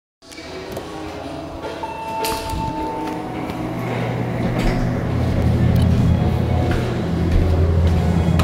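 Elevator hum: a low steady hum comes up a few seconds in and holds. Before it, about two seconds in, there is a short single-pitch beep, and a few light clicks are scattered through.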